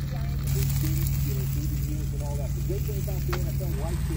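Food frying quietly in a non-stick pan, a tortilla over an egg on a hot plate, with a faint sizzle over a steady low hum. There is a single light click about three seconds in.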